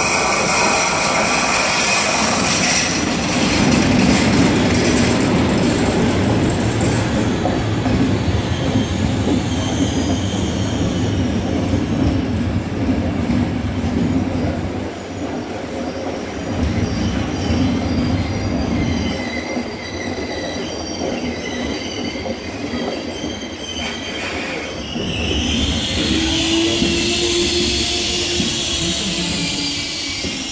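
Locomotive-hauled passenger train rolling past on the station tracks: a heavy, steady rumble of the locomotive and coaches on the rails. High-pitched wheel squeal grows strong near the end as the last coaches go by.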